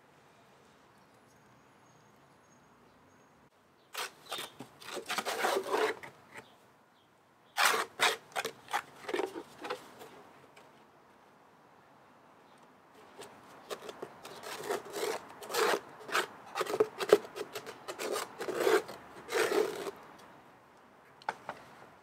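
Repeated scraping and rubbing strokes as thick pond-mud slurry is scraped out of a plastic flowerpot into another pot. They come in three spells after a quiet start, the longest in the second half.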